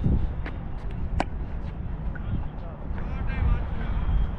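A cricket bat hitting the ball with one sharp crack about a second in, over a steady low rumble, with faint voices near the end.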